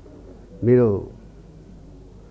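Speech only: a man speaking into a microphone says one short, drawn-out word about half a second in, its pitch arching and falling. Faint room noise fills the rest.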